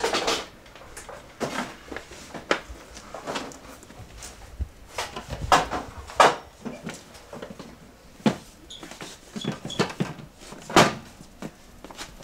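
A portable typewriter case being handled and set down among cluttered shop goods: irregular knocks and clunks of the hard case and its fittings, the loudest about halfway through and near the end.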